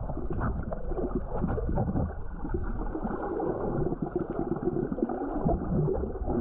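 Muffled underwater sound from a camera held under the water: a steady low rumble and gurgle of moving water, with faint scattered clicks.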